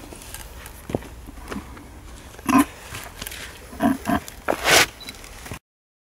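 Gloved hand scraping and brushing gravelly grave soil, with small scattered crackles of grit. Over it come a few brief, muffled, voice-like sounds about two and a half and four seconds in.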